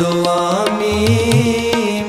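Sikh kirtan music: harmoniums holding a melody over tabla accompaniment, with deep strokes of the bass drum about a second in.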